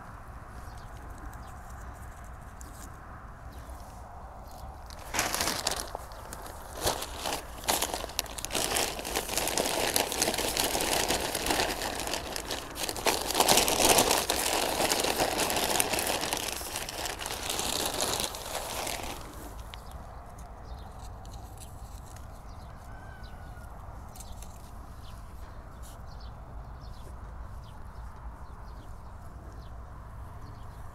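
Plastic sack crinkling and rustling as it is handled and tipped over a planting hole to empty soil, starting about five seconds in and stopping a little before the twentieth second, loudest in the middle.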